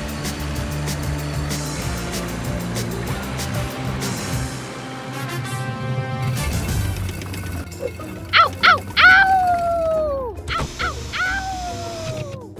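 Cartoon background music, then from about eight seconds in a cartoon wolf cub's yelps and two long howls falling in pitch.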